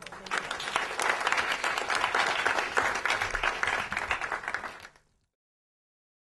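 Audience applauding, dense clapping that cuts off about five seconds in.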